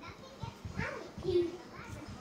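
Children's voices: indistinct child speech, with short bits of talk around the middle.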